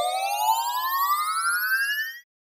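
Synthesized rising-pitch sweep sound effect (a 'riser'): one steady upward glide in pitch with a buzzy, shimmering upper layer, ending abruptly.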